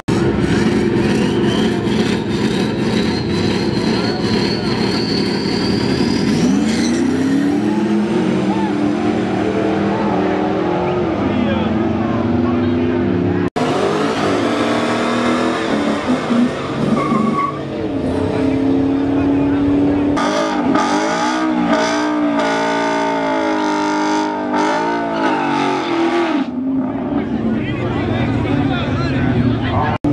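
Drag cars at the strip: a car's engine with tyre noise and a whine rising in pitch over the first few seconds, then engine revs gliding up and down. After a sudden cut, a burnout: the engine revved up and down repeatedly while the rear tyres spin and smoke.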